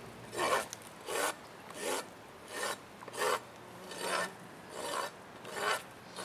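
Farrier's hoof rasp filing a miniature zebu bull's hind hoof: about eight steady, rhythmic strokes, one every three-quarters of a second.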